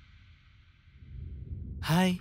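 Quiet room tone, then near the end a single short, voiced sigh.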